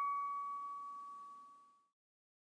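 The last note of a short glockenspiel-like intro jingle ringing out: one clear bell-like tone with a fainter higher overtone, fading steadily and dying away about three quarters of the way in.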